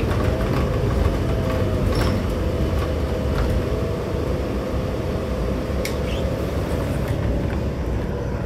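Diesel engine of a New Flyer Xcelsior XD60 articulated bus running steadily, a low rumble with a faint whine over the first two seconds and a couple of light clicks.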